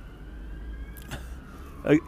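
Faint siren wailing, its tone sliding slowly up and then down, over a low steady rumble, with a brief click about a second in.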